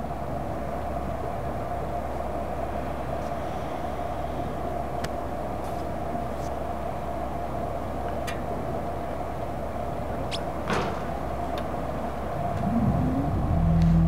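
A steady mechanical drone with a low hum and a few faint clicks. Near the end a low wavering tone swells in.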